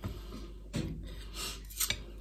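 Table knife sawing through a baked pizza on a plate, a soft rasping broken by a few short scrapes and clicks of the blade and fork against the plate.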